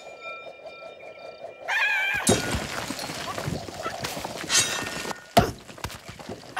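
Cartoon sound effects: a held, bright twinkling chime for about the first second and a half, then a short wavering cartoon vocal sound and a run of crashes and thuds, with a sharp hit about five and a half seconds in.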